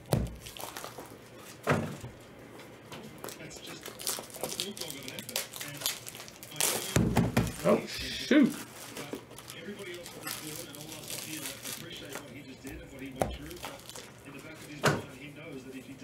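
Trading cards and hard plastic card cases being handled on a tabletop: a few separate knocks and clatters, loudest in a cluster about seven to eight and a half seconds in. Underneath runs faint speech from a baseball broadcast on a TV.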